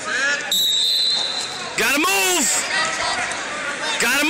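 Men shouting from the mat side, loudest about two seconds in, with one short, steady, high referee's whistle blast about half a second in.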